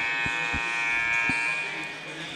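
A gym scoreboard horn sounds one steady buzzing tone that stops near the end. Three dull thumps sound underneath it.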